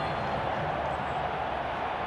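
Steady background noise of a football ground as picked up by the broadcast's pitch-side microphones, with no distinct knocks, whistles or shouts standing out.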